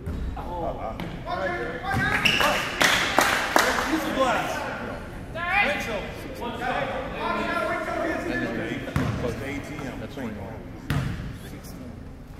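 Voices of players and spectators calling out across a large gym, with a few sharp knocks of a basketball bouncing on the wooden court.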